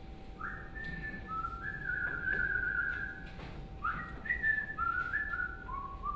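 A person whistling a tune: two phrases, each opening with a quick upward swoop and then stepping down through a few held notes.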